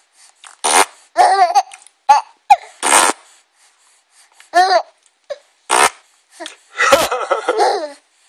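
A baby laughing in short, separate bursts of giggles, with sharp breathy bursts between them. The longest and loudest run of laughter comes near the end.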